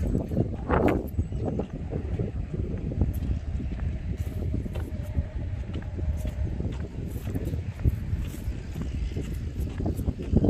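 Wind buffeting a phone microphone: an uneven low rumble that rises and falls without pause.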